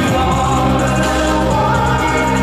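Pop ballad performed live: a male lead vocalist singing over a full backing track with choir-like backing voices and small regular ticks of percussion.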